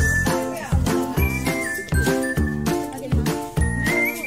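Background music with a steady beat, about three beats every two seconds, and a high, bright melody line over it.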